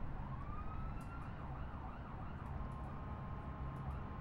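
Faint emergency-vehicle siren over a low, steady city traffic rumble: a rising wail, then a few quick up-and-down warbles, then a steady held tone.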